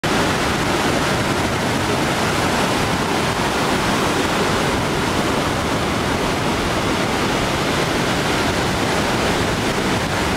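Ocean surf breaking on a sandy beach: a steady, loud wash of waves with no single crash standing out.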